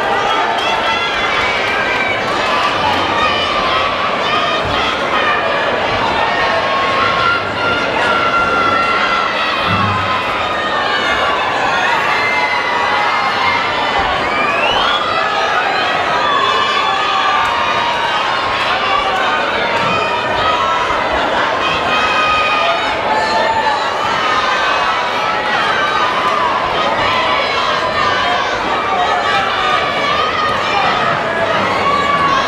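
Crowd of spectators shouting and cheering continuously, many voices overlapping at a steady loud level.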